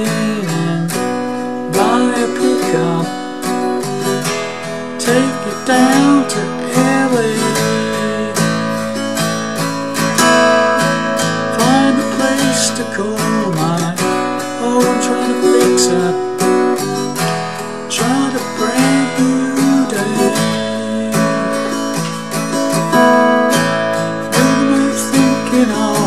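Steel-string acoustic guitar strummed straightforwardly through a verse chord progression of A, B minor and E, with a voice singing the lyric along.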